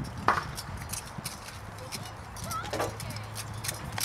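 Hoofbeats of a horse moving over a grass field, a series of irregular short strikes, with one sharper knock a moment after the start.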